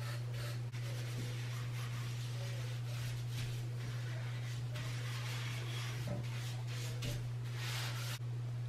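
Faint, scratchy rubbing strokes of a steel wool pad gently scrubbing water spots off a metal tub spout and faucet handle, over a steady low hum.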